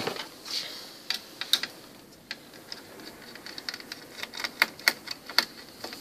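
Scattered light clicks and taps of hands handling the hard disk drive and its metal mounting inside an opened all-in-one computer, coming thicker in the second half.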